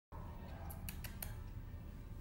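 Four quick sharp clicks within about half a second, over a steady low rumble close to the microphone.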